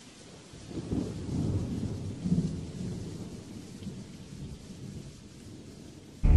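Thunder rolling over steady rain: a low rumble builds about half a second in, is loudest around two seconds, and fades away.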